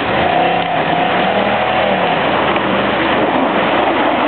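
Dodge Ram 2500 pickup engine revving under load as the truck pulls through deep mud, its pitch rising and falling.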